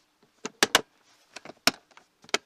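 Latches on a hard plastic equipment case being snapped shut. About five sharp clicks come in two groups.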